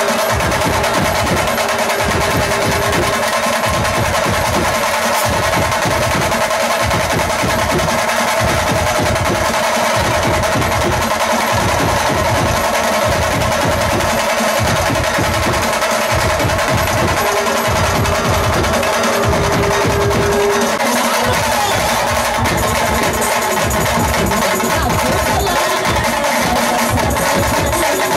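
Loud procession music with fast, dense drumming under a steady held tone, typical of a dhol-tasha band.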